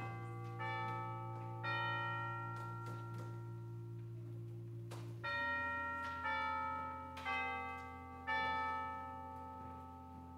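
Chimes struck one note at a time in a slow tune, each note ringing and dying away, with a pause in the middle. A held low chord sounds beneath them and changes about halfway through.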